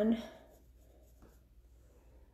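A woman's voice finishing a word, then faint brushing of a makeup brush blending powder on the face, with a small tick a little over a second in.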